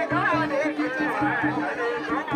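Dhol and damau drums beating a steady rhythm of about three to four strokes a second, under loud crowd chatter and overlapping voices.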